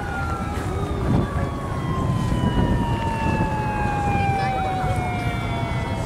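An emergency-vehicle siren's long wail, its pitch holding briefly and then falling slowly and steadily, over a steady low rumble.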